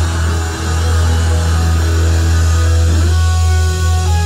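Live rock band playing loud: electric guitar over a deep, held bass note. About three seconds in, the guitar settles into clear sustained notes.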